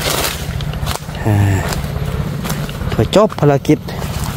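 A man's voice speaking two short phrases over a steady low rumble, with a brief rush of noise at the very start.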